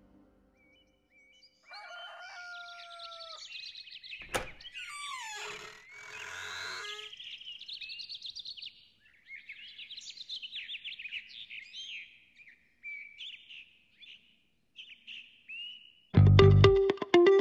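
Several birds chirping and calling, in short repeated calls that come and go. There is a single sharp click about four seconds in and a louder, lower gliding call soon after.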